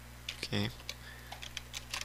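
Typing on a computer keyboard: about ten separate, irregular keystroke clicks.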